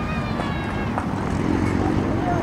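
Distant shouting voices of players on a football pitch over a steady low rumble, with one faint knock about a second in.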